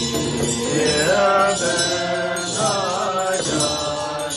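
Sung Tibetan Buddhist ritual chant, the melody moving in long held notes that glide up and down between pitches.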